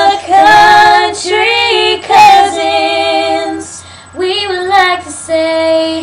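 Two young girls singing together in phrases of held, sliding notes, with a brief pause about two-thirds of the way through.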